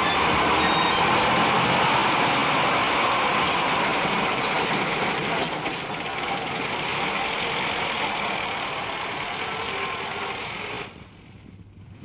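Small van's engine running with road noise, pulling up and then running steadily. The sound eases a little, then cuts off suddenly near the end as the engine is switched off.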